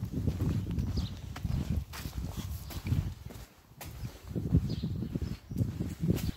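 Footsteps on dirt and straw, an uneven run of low thuds, with rumbling on the microphone as the phone is carried.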